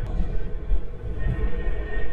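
Road and tyre noise inside a Tesla Model 3's cabin at freeway speed: a steady low rumble with an even hiss above it and no engine note.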